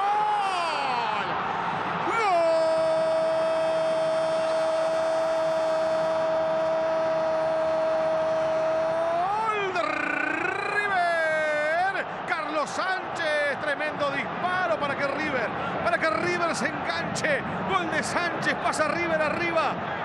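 Television football commentator's goal call: one long drawn-out shout held on a single steady note for about seven seconds, announcing a goal. It then breaks into more excited shouting that rises and falls.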